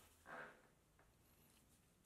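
Near silence, with one faint, brief sound about a third of a second in.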